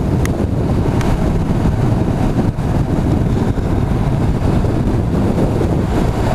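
Steady wind rush on the microphone of a motorcycle being ridden at speed, with the Honda NC750's engine and road noise underneath.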